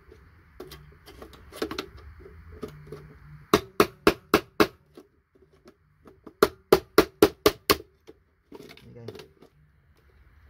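Hammer striking a steel chisel held against IC chips to knock them off a circuit board: a quick run of about five sharp metallic taps a little over three seconds in, then about six more a couple of seconds later.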